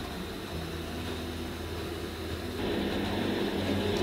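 Steady low hum and hiss with no distinct events, growing a little louder about two and a half seconds in.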